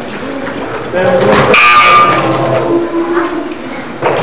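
Indistinct voices of players and spectators echoing in a gymnasium, with a louder burst of shouting from about one to two seconds in.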